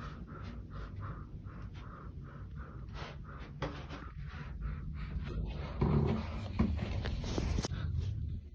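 Rapid, heavy panting of a frightened person, about three to four breaths a second. Louder thumps of the camera being handled come near the end.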